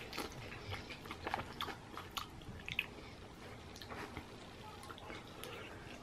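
A person chewing and biting into a chicken wing: faint, scattered small wet mouth clicks.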